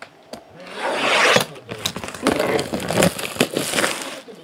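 Plastic shrink wrap being cut and torn off a trading card box: a loud ripping scrape about a second in, then crackling and crinkling of the plastic as it is pulled away.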